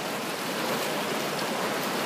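Water splashing from a swimmer's front-crawl arm strokes and kick, a steady wash of churning water.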